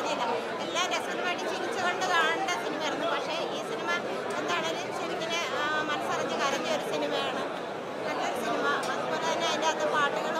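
Crowd chatter: many people talking at once in a packed crowd, overlapping voices with no single voice standing out, at a steady level throughout.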